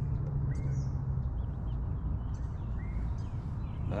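Low steady hum of a boat's electric trolling motor that cuts off about a second in, over a continuous low rumble, with a few faint bird chirps.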